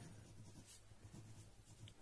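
Faint scratching of a pen writing by hand on notebook paper.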